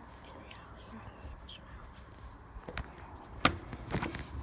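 Phone handling noise: a faint low rumble with a few sharp clicks and knocks about three seconds in, the loudest near three and a half seconds, as the phone and a plush toy are moved on a windowsill.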